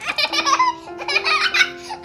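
A young child laughing hard in a rapid string of high-pitched peals, over background music with long held notes.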